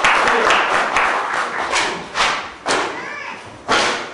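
Clapping in a large hall, dense at first and thinning out, then three separate sharp knocks: one about two seconds in, one half a second later, and one near the end.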